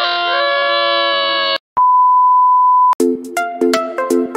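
A held, pitched sound shifting between a few steady notes cuts off sharply about a second and a half in. It is followed by a single steady censor beep lasting about a second, and then electronic music with a beat starts near the end.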